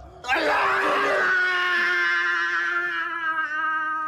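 A person screaming: one long, loud scream that starts ragged and then holds a single steady pitch for over three seconds before breaking off.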